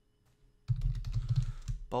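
Fast typing on a computer keyboard, a quick run of keystrokes starting just under a second in.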